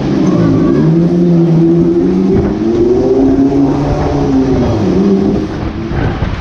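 A Musik Express fairground ride running at speed, its cars rumbling past along the track, with a sustained droning tone that holds and then rises and falls in pitch.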